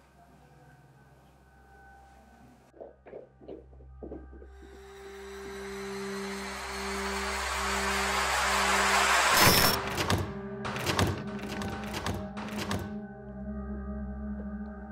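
Suspense film score: low held tones pulse under a swell of rising noise that builds for about five seconds, then breaks into a run of heavy hits and thuds before settling back to the low tones.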